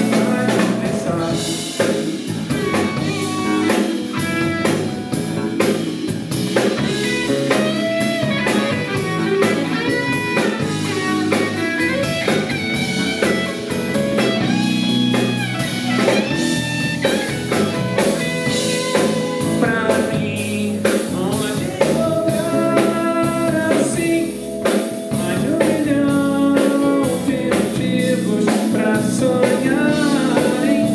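A live band playing a song: a male voice sings over electric guitar, electric bass, drum kit and keyboards, at a steady full level.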